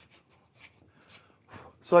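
A few last faint, scattered strokes of sandpaper rubbing on a wooden part as hand-sanding stops, then a man starts speaking near the end.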